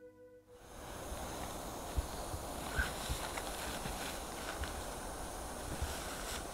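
The last notes of a music track fade out within the first half-second. Then comes steady outdoor background noise with a few soft low thumps and light clicks scattered through it.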